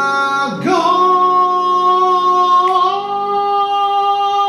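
Male voice singing one long held high note, sliding up into it about half a second in, with live acoustic piano accompaniment.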